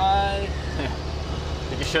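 Steady low drone of a truck's engine heard inside the cab, under a man talking. It drops out abruptly near the end with a brief sharp click.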